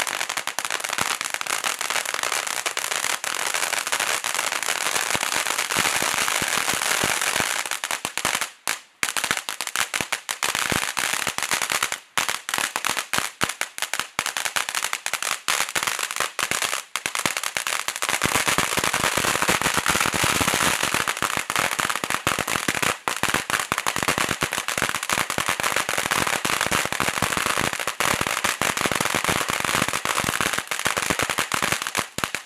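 Ground firework fountain burning, throwing out crackling stars: a dense, continuous crackle of small pops. It thins briefly about nine seconds in and grows fuller and heavier from about eighteen seconds on.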